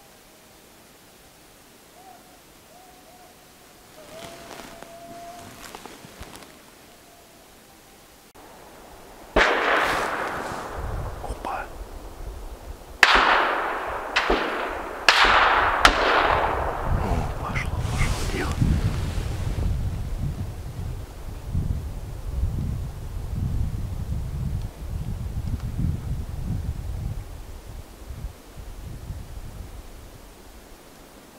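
A volley of about five or six gunshots from hunting guns during a moose drive, each shot rolling away in a long echo, with the loudest cracks about a third and halfway through. A low rumble runs underneath from the first shots onward.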